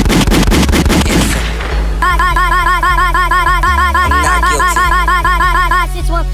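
Instrumental of a sped-up hip hop track. It opens with a fast run of sharp, evenly spaced hits over deep bass that fades out over the first second or two. Then a short synth melody figure repeats over booming 808 bass notes that step in pitch.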